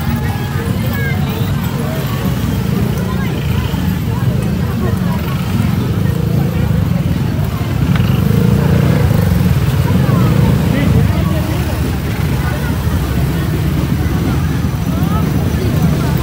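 Crowd chatter over the steady low running of several motor scooter engines moving at walking pace.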